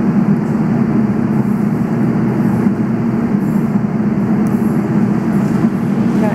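Subway train running through the station: a loud, steady rumble.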